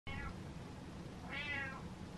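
An orange-and-white domestic cat meowing twice: a brief falling meow right at the start, then a louder, longer meow about a second and a half in that rises and falls in pitch.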